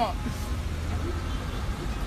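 A steady low background rumble with nothing pitched in it, after a man's last spoken word at the start.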